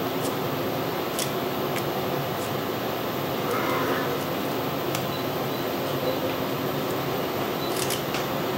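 Steady mechanical hum of fan or ventilation noise, with a few faint, scattered clicks.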